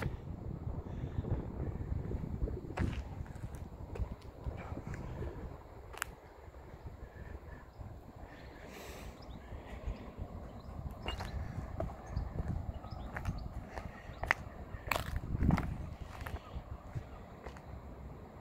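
Footsteps on broken concrete and loose rubble, with a few sharp clicks of debris underfoot, over a steady rumble of wind on the microphone.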